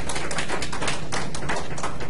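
Audience applauding, a dense run of irregular hand claps.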